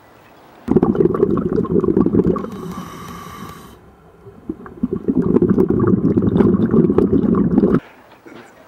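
Scuba regulator exhaust bubbles rumbling and gurgling past an underwater camera in two long bursts, with a brief thin hiss between them as a breath is drawn through the regulator. The sound starts and stops abruptly.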